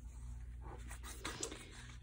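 Paper pages and cards of a handmade junk journal being turned and handled: a faint rustle, with a few light brushes of paper a little after a second in, over a low steady hum.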